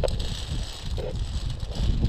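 Wind buffeting the action camera's microphone as a low, uneven rumble, with faint clicks and rustle of climbing gear on the via ferrata cable.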